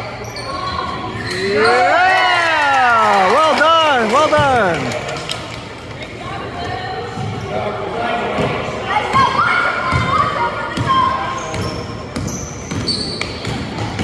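A basketball being dribbled on a hardwood gym floor, bouncing repeatedly in an echoing hall, with drawn-out rising-and-falling shouts from spectators in the first few seconds.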